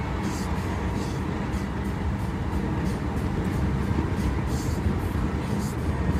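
Steady road and engine rumble of a moving car, heard from inside the cabin.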